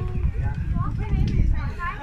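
Indistinct voices of people talking nearby, over wind buffeting the phone's microphone.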